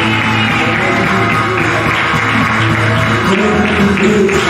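Worship music from an electronic keyboard: held low chords that change every second or so, with a busy, dense layer above them.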